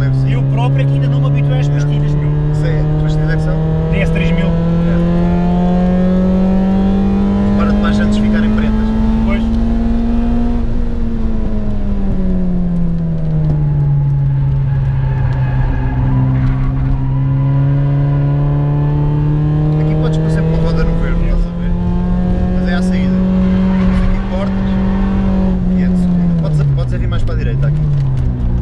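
Citroën Saxo Cup race car's 1.6 16-valve four-cylinder engine, heard from inside the cabin while it is driven hard on a circuit. The revs climb slowly for about ten seconds, ease off over the next few, climb again and hold, then dip briefly near the end.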